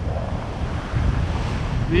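Wind buffeting the microphone in a low, uneven rumble over the hiss of surf washing around the legs.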